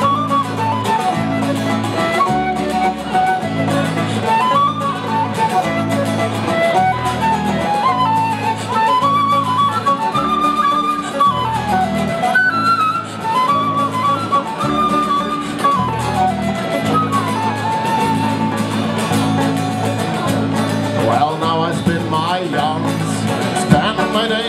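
Instrumental break of an Irish folk ballad played live: a flute carries the melody, stepping up and down in short phrases, over strummed acoustic guitar and banjo keeping a steady rhythm.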